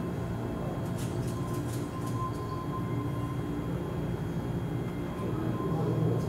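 Steady low hum of machinery with a few faint thin tones above it and some light clicks between one and two seconds in, typical of the ambience in front of an aquarium tank.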